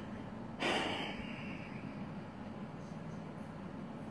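A man's single breath out, through the nose or a sigh, about half a second in and fading over about a second, over faint room tone.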